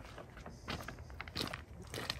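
Footsteps on loose river-rock gravel, a few separate steps at a walking pace.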